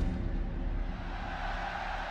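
Logo intro sound effect: a steady whooshing drone with a deep rumble underneath and a few faint held tones.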